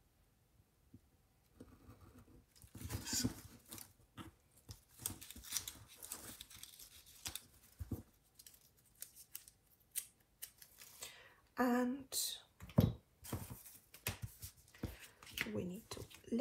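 Craft knife scoring washi tape along a wooden ruler, then the cut tape being peeled up and torn, in a series of short scratchy strokes and rustles. The blade is due for changing, which she suspects is why it drags and tears rather than cuts cleanly.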